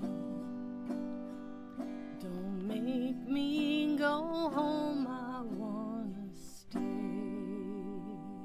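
A slow, gentle song: held chords with a guitar under a melody line that wavers in pitch, briefly breaking off near the end before the chords come back in.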